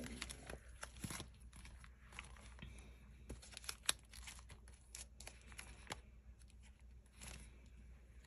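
Clear plastic sleeves and sticker sheets in a sticker album crinkling and rustling as the pages are leafed through by hand. There are scattered soft crackles and one sharper click just before the middle.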